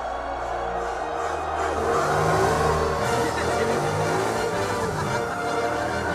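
A race car's engine revving while it does a burnout, tyres spinning on the track, under music from the film score. The revving gets a little louder about two seconds in.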